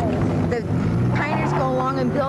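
A person talking over a steady low hum.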